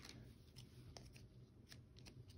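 Near silence with a few faint ticks and rustles of football trading cards being flipped through by hand.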